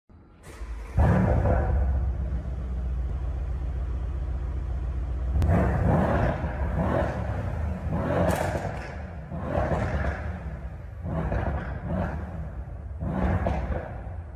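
Car engine catching about a second in with a flare, settling into a steady idle, then revved in about eight short blips from around five seconds on.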